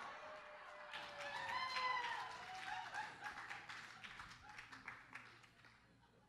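Faint, scattered audience applause, with a few distant voices in the room. The clapping swells about a second in and thins out before the end.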